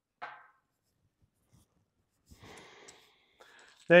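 A short breath, then faint scraping and rustling of tripod gear being handled, with a small click near the end.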